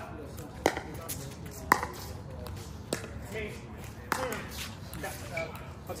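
Pickleball paddles hitting the plastic ball back and forth in a rally: four sharp pops, roughly a second apart.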